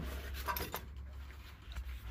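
Quiet room tone with a steady low hum and a few faint rubbing and handling noises.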